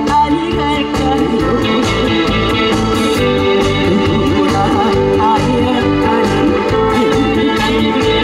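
Live trot song: a woman singing with a live band, brass and keyboard included, over a steady dance beat.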